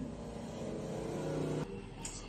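A steady low motor hum that stops abruptly about one and a half seconds in.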